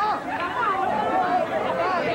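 Speech: a woman preacher's voice exclaiming into a microphone, with several other voices overlapping.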